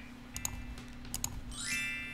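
Animated subscribe-button sound effects: two quick double mouse clicks, about half a second in and just past a second, as the like and bell icons are clicked. Then a rising swish leads into a ringing chime near the end, the notification bell switching on.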